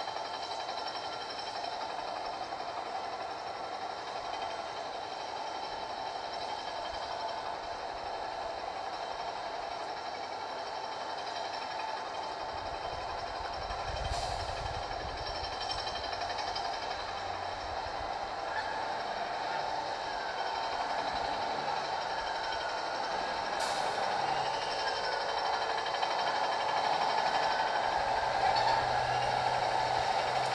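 Steady outdoor background noise, a hum and hiss growing slowly louder, with two brief clicks in the middle.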